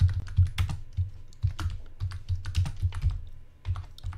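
Typing on a computer keyboard: a quick, irregular run of keystrokes entering a line of text.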